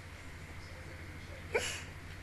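A woman's short squeal rising in pitch, once, about one and a half seconds in, over a steady low hum.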